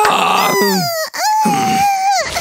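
A cartoon character's exaggerated wailing cry: a falling wail in the first second, then after a brief break a long, held wail.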